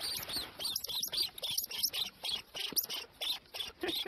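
A small animal squeaking: quick, high-pitched chirps, several a second, in short runs.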